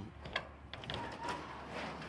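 Large sliding sheet-metal pole barn door being pushed open along its track. A click about a third of a second in is followed by a rattling, scraping roll with a faint whine partway through.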